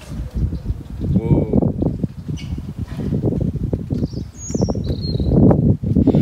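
Wind and rain noise rumbling unevenly on a phone microphone at a motorway roadside, with a brief high squeak about four and a half seconds in.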